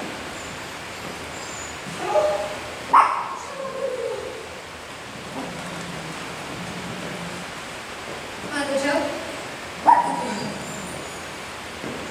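A small dog barking in short, sharp barks. The two loudest come about three seconds in and again about ten seconds in, with short vocal calls just before each.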